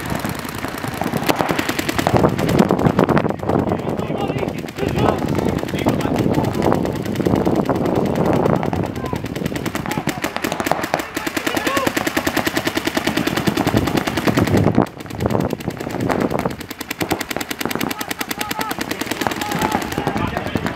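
Paintball markers firing rapid streams of shots, many a second, with a brief lull about fifteen seconds in.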